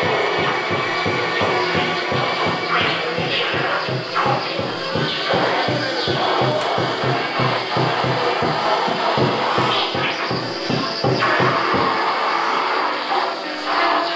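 Live experimental noise music: a steady low pulse of about four beats a second under dense, scratchy, grinding noise. The pulse drops out about twelve seconds in, leaving the noise alone.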